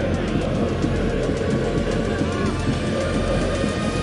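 Music with a crowd of football supporters chanting over it, many voices at once.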